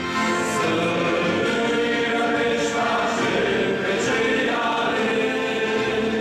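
A young men's choir singing a church song in multi-part harmony, accompanied by an accordion.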